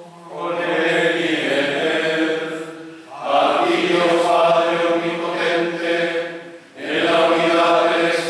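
Male voices chanting together in long held phrases, breaking briefly about three seconds in and again near the end. This is the sung close of the Eucharistic prayer as the chalice and paten are raised.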